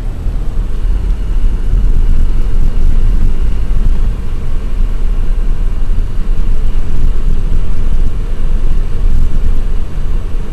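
A moving car's road noise with wind buffeting the microphone: a loud, steady low rumble.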